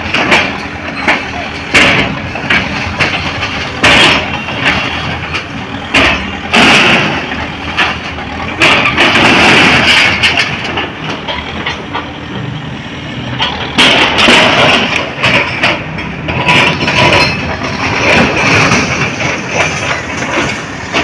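Manitou TLB 844S backhoe loader's diesel engine running while its arm breaks down brick walls: repeated knocks and crashes of falling masonry, bamboo and metal sheeting, with several heavier collapses along the way.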